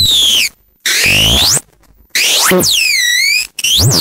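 Circuit-bent speech-synthesizer circuits from a VTech My First Talking Computer producing electronic pitch glides instead of words. A falling glide, then a rising one, then swooping up-and-down tones, cut by two short silences and a brief drop near the end.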